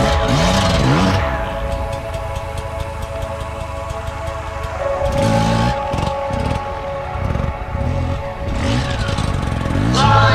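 Beta RR 300 two-stroke single-cylinder enduro engine revving up and down, with one rev about a second in and a run of rising and falling revs in the second half as the bike wheelies. Background music with held chords plays over it.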